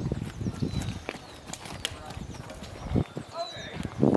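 Footsteps on a wood-chip mulch trail, a run of short soft knocks.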